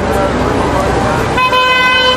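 Street traffic noise with a vehicle horn sounding one steady note for about a second near the end.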